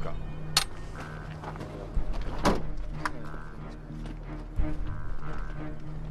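Tense film score: a steady low drone under a repeating higher pulsing tone. A few sharp clicks and thuds cut through it, the loudest about half a second and about two and a half seconds in.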